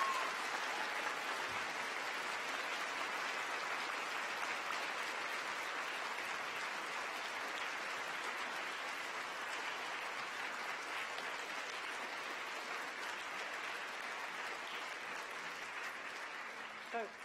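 A large crowd applauding: dense, steady clapping throughout, easing off slightly toward the end.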